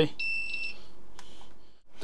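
Hurner HST-S-315 electrofusion welder's beeper giving one steady high beep of about half a second near the start, as its welding output is stopped. A faint click follows about a second later.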